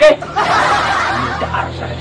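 Breathy snickering laughter that starts about half a second in and fades away over roughly a second and a half.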